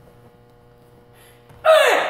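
Karate kiai: one sharp shout from a woman performing a form, about a second and a half in, falling in pitch as it fades. A steady electrical hum sits underneath.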